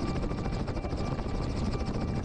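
Helicopter running close to the microphone, its rotor and engine noise steady with a fast, regular pulse, while it moves low over the ground. It is heard from a camera mounted on the outside of the fuselage.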